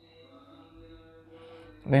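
A faint, steady held vocal tone, even in pitch for about a second and a half, then a man starts speaking near the end.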